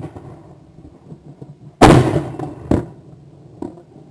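Shotgun firing: one loud report about two seconds in, then two fainter cracks, the first about a second later and the second near the end.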